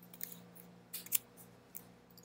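A few faint, sharp clicks of a computer mouse, the loudest a close pair about a second in.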